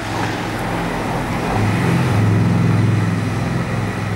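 Street traffic: a road vehicle's engine running close by, a low hum that grows louder about halfway through and eases off near the end.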